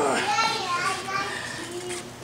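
Raised men's voices, loudest at the start and tapering off over the next second or so.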